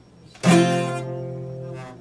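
Epiphone steel-string acoustic guitar: one strummed chord about half a second in, ringing and slowly fading, then damped near the end.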